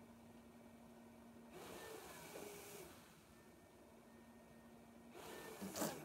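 Faint rush of air, a breath delivered or drawn through a breathing machine's nasal mask, about a second and a half in and lasting about a second, over a faint steady hum. A second rush of air starts near the end.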